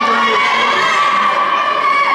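Children shouting and cheering together, one high voice holding a long, steady yell until just before the end, in an indoor sports hall.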